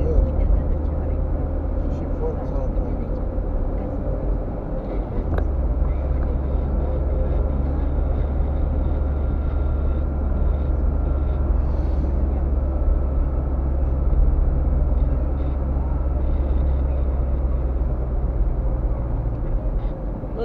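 Steady road and engine noise inside a moving car's cabin: a continuous low rumble of tyres and engine, with a slight change in the rumble about five seconds in.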